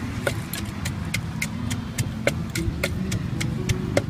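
Wooden pestle pounding in a clay mortar: quick, irregular knocks about four a second, a few of them heavier. A steady low engine rumble runs underneath.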